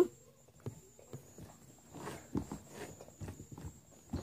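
Fingers handling and picking at a foam squishy toy close to the microphone: quiet, irregular clicks and rubs.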